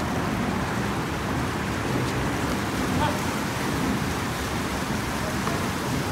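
Steady rushing noise with a fluttering low rumble: wind buffeting the microphone over open water.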